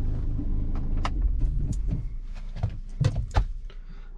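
Ford EcoSport's engine idling, heard from inside the cabin as a steady low hum that slowly fades. Several sharp clicks and knocks from the car's controls sound over it, two of them close together about three seconds in.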